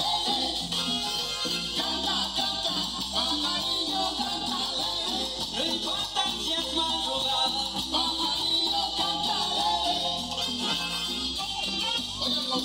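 Upbeat Latin dance music with singing, played by a band through outdoor loudspeakers.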